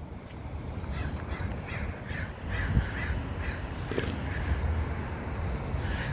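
Crows cawing, a run of short calls about every half second, over a low steady rumble, with one short thump a little under three seconds in.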